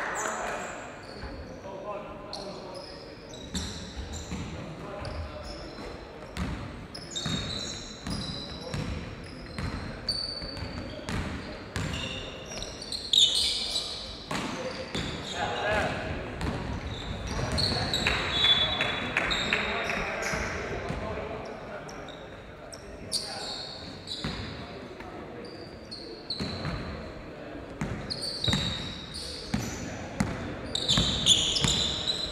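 Basketball game in a large sports hall: the ball bouncing on the court, short high squeaks of sneakers on the floor, and players' voices calling out.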